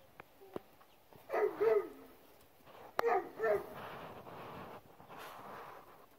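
A dog vocalizing twice, two short pitched calls about a second and a half apart.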